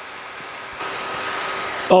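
Steady hiss of room and recording noise, with a faint hum of electronics or a fan in it. It jumps up abruptly, louder and brighter, a little under a second in, as at a splice in the recording.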